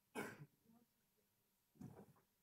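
A person clearing their throat twice, short and abrupt, about a second and a half apart, against near silence.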